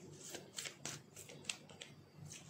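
A deck of oracle cards being shuffled by hand: a quick, irregular string of soft card flicks and slaps.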